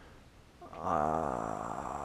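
A man's long, drawn-out hesitation sound, a voiced "uhh" in his throat, starting about a second in after a quiet pause.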